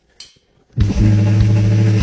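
A finger snap, then a man's voice holding one steady, low buzzing note for about a second, a mouth imitation of a snare drum roll.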